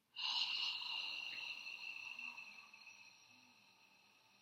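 A woman's long, deliberate cleansing breath out through the mouth, starting suddenly and fading away over about three seconds.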